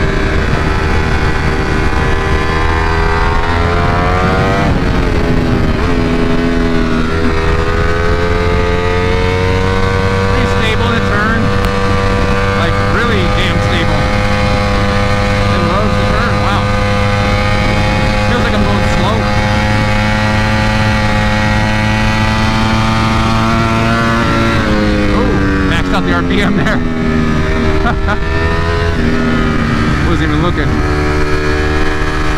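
2021 Ducati Panigale V4 SP's 1103 cc Desmosedici Stradale V4 engine on stock factory tuning, ridden hard: it revs up in the first few seconds, drops back, then pulls at a steady, slowly climbing pitch for most of the time before falling off in steps near the end and rising again. Wind rush runs under it throughout.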